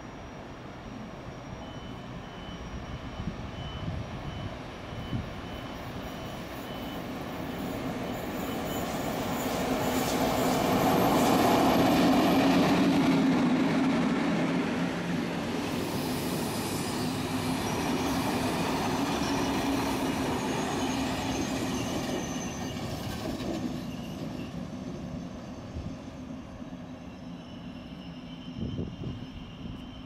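A MÁV class V63 electric locomotive hauling a passenger train passes close by. The sound builds to its loudest about twelve seconds in, with a steady low drone, then continues as the coaches roll past with the rumble of wheels on rail and thin, high wheel squeal. It fades near the end.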